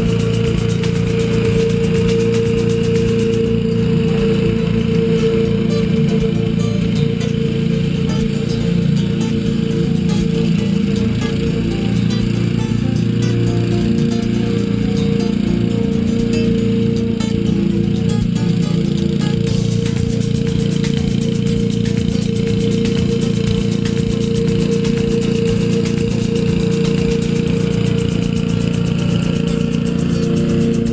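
Honda HRU216M2 self-propelled rotary mower's engine running steadily at constant speed while cutting grass, with background music over it.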